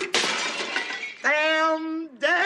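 A glass bowl smashing, its crash lasting about a second, then a woman's anguished cry of "Damn!" a little past halfway, the first of a string of grief-stricken shouts.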